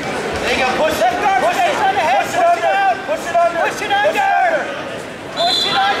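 Spectators and coaches shouting and talking over one another, a steady crowd hubbub of many voices. A short steady high-pitched tone sounds near the end.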